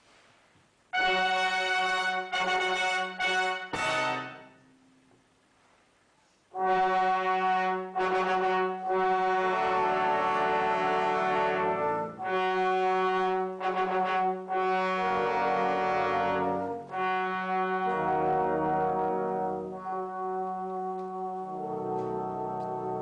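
Brass band playing. A few short bursts of chords come about a second in, then a pause of about two seconds. From about six and a half seconds, full sustained chords play over a held bass note.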